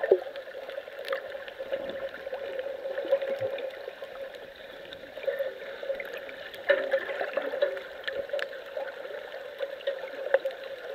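Underwater sound picked up by a submerged camera: a steady muffled wash of water with a constant low hum and a few small clicks.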